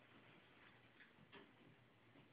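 Near silence: faint room tone, with two soft ticks a third of a second apart about a second in.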